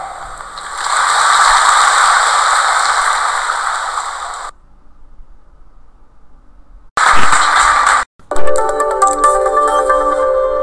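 Audience applauding for about four seconds, cut off suddenly; after a faint gap, a second short burst of applause, then music with sustained, ringing tones starts near the end.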